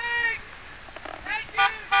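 A car horn honking twice in short beeps near the end, preceded by high, arched whooping calls from a voice.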